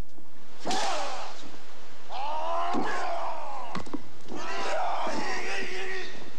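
Martial-arts shouts: a man lets out about three long cries, each rising then falling in pitch, with sharp whacks of a split bamboo kendo stick among them.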